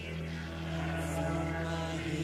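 Heavy metal band music: a low, steady droning chord held without a break.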